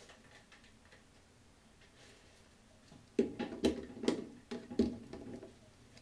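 A few seconds of quiet room, then a run of about five sharp knocks and clatters over two seconds from objects being handled at close range. No hair dryer is running.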